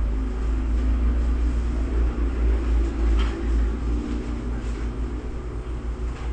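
An uneven low rumble with a faint background haze and no speech.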